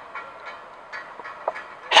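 A brief pause in a man's speech, filled with faint steady outdoor background noise and a small click about one and a half seconds in; his voice comes back right at the end.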